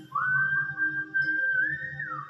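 A man whistling a melody with his lips: one long pure note that slides up just after the start, holds, then steps higher near the end, over a karaoke backing track.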